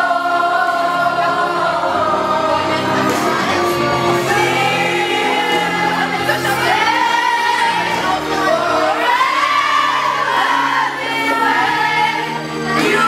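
A group of women singing along together to a karaoke ballad over an instrumental backing track, their voices blending like a loose choir.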